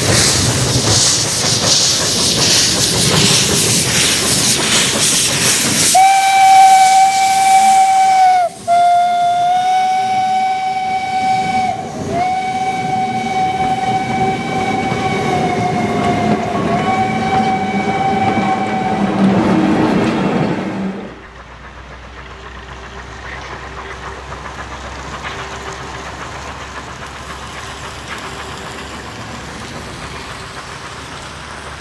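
Steam locomotive setting off: a loud hiss of steam venting at the front of the engine for about six seconds. Then its steam whistle sounds one long, steady note for about fifteen seconds, broken briefly twice. After that the sound drops to a much quieter steady noise.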